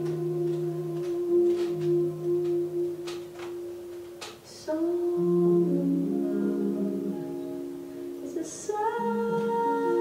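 Female jazz singer holding one long note over soft archtop guitar chords. About halfway through she slides up into a new phrase, and she moves higher near the end.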